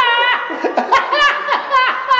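A woman laughing loudly and high-pitched: a run of held 'ha' syllables, each sliding down in pitch at its end, about two a second.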